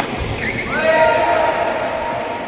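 A racket hits a shuttlecock with a sharp smack, then sneakers squeak on the synthetic court mat as the players move and the rally ends.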